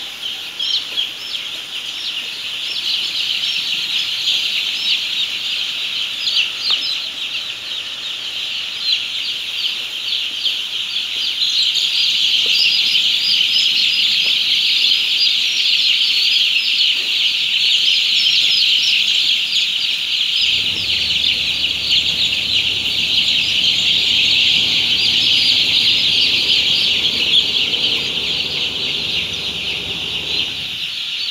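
A dense chorus of thousands of six-day-old broiler chicks peeping continuously, getting louder about halfway through. A steady low hum joins about twenty seconds in.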